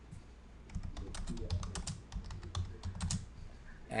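Typing on a computer keyboard: a quick run of key clicks that starts about a second in and stops shortly before the end.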